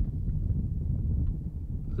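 Wind buffeting the microphone out on open water: a steady, uneven low rumble.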